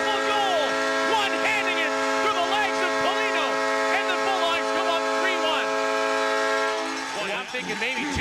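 Hockey arena goal horn sounding a steady chord over a cheering crowd's whoops and yells after a home goal; the horn cuts off about seven seconds in.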